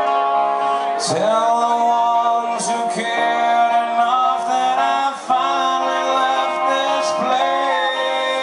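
Live rock song: a man singing long, held phrases, each sliding into its note, over an electric guitar.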